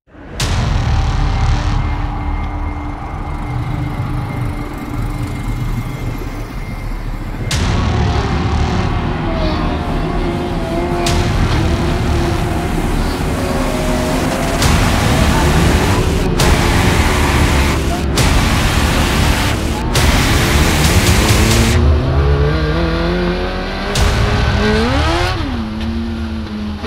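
Mod Lite dirt-track race car's engine heard from inside the car, running with an uneven, wavering pitch and then revving up with a rising pitch near the end as it pulls onto the track. Rushes of noise come and go in the middle.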